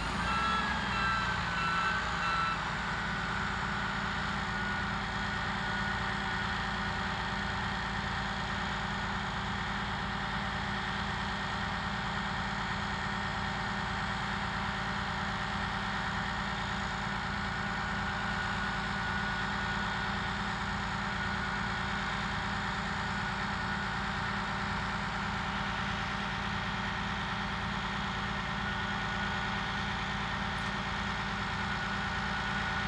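Harsco ballast tamper's diesel engine running steadily with a low drone. Its warning beeper sounds a quick run of beeps in the first couple of seconds, and fainter beeping returns a few seconds later and again near the end.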